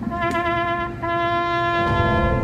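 Solo trumpet sounding a slow military call: a long held note, broken briefly about a second in and held again at the same pitch, then moving to a new note near the end.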